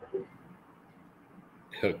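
A pause in speech with only faint hiss, opened by a brief vocal sound just after the start; a man starts speaking near the end.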